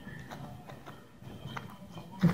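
A handful of light, scattered clicks and taps as fingers press and roll a soft rice-paper wrapper on a perforated plastic plate, over a faint low hum.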